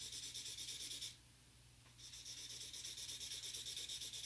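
Pink felt-tip marker shading on a paper chart: fast back-and-forth scratching strokes. They stop about a second in, then start again and run on.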